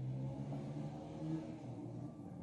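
A faint, steady low hum, fading a little after about a second and a half.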